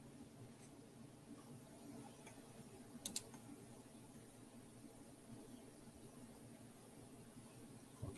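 Near silence: room tone, with a quick pair of faint clicks about three seconds in.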